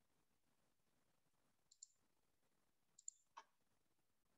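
Near silence with a few faint computer mouse clicks: one about two seconds in and a couple more near the end.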